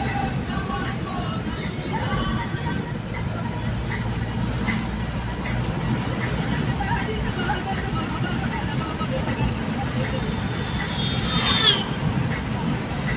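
Steady road and engine noise of a moving car heard from inside with the window open, with faint voices of people talking. Near the end comes a brief sharp high sound that falls slightly in pitch.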